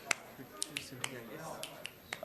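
About six sharp, irregularly spaced clicks over faint murmuring voices.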